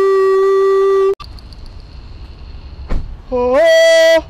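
A man's voice holding a long, steady 'boo' note, cut off abruptly about a second in. After some quieter background noise and a single short knock, a second long held tone, sliding up as it starts, sounds near the end.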